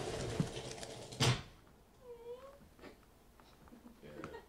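Stage sound effects for a carrier pigeon's flight: a rushing, fluttering noise, then a single sharp crack about a second in, then a short faint wavering cry.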